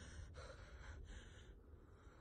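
Near silence, with a few faint breaths.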